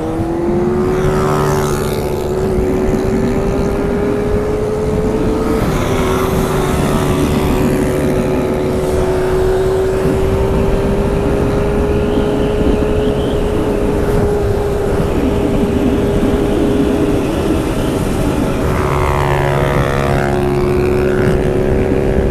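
Motorcycle engine running at a steady cruising speed, heard from the rider's own bike with wind rushing over the microphone. Its note holds steady, dropping a step about five and a half seconds in.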